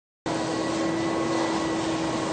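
A steady mechanical hum with an even hiss and a few constant tones, starting about a quarter of a second in.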